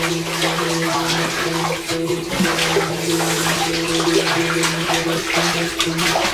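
Bath water being sloshed and splashed by hand, played as an instrument, over a steady low drone of held tones that breaks off briefly near the end.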